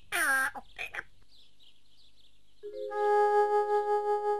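Cartoon soundtrack: a short, falling, voice-like call at the start, then faint high twittering, then a sustained synthesizer chord that swells in about two-thirds of the way through and holds.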